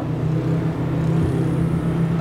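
A steady low hum with a faint background haze, unchanging throughout.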